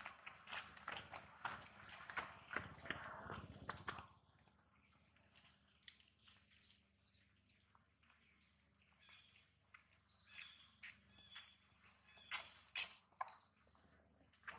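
Faint birds chirping and twittering: many short, high calls scattered throughout, with a louder stretch of broad noise under them for the first four seconds.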